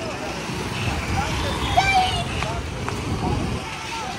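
Busy street at night: passers-by talking over the engine of a motor scooter riding past close by, which swells and is loudest about two seconds in.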